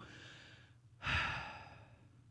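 A man breathing audibly into a close microphone: a faint breath at the start, then a louder one that starts suddenly about a second in and fades away.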